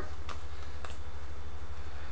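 Steady low background hum with two faint clicks, one shortly after the start and one just before the middle.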